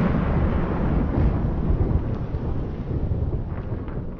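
Thunder-like rumble from the lightning-bolt logo sting, starting suddenly and slowly dying away.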